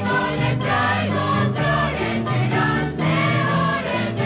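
Music with a choir singing, steady throughout.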